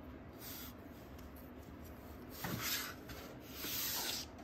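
Hands handling a small plastic LEGO model and brushing across the tabletop: soft rubbing in a few short strokes, a clearer one past halfway with a light knock, and another near the end.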